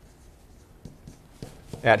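Dry-erase marker writing on a whiteboard: short, faint strokes as a word is written out. A man speaks a single word near the end.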